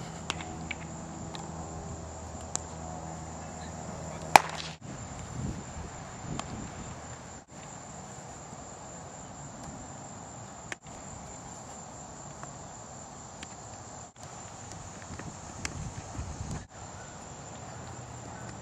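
Ball-field ambience with a steady high insect chorus, broken by a few sharp baseball impacts, the loudest about four seconds in. A low hum runs for the first few seconds, and the sound drops out briefly several times where the clips are joined.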